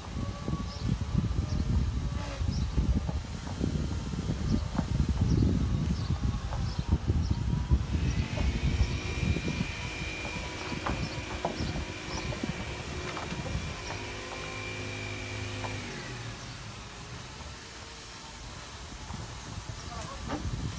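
A wooden fishing caique's launching cradle working down the slipway rails, with a low rumble and scattered knocks. Then a long steady high squeal from about eight to sixteen seconds in, joined by a low hum for its last few seconds.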